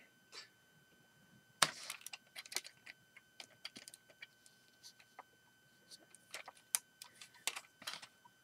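Plastic Lego bricks clicking and rattling as a built Lego model is picked up, handled and turned over: a series of irregular sharp clicks, the loudest about one and a half seconds in and again near seven seconds.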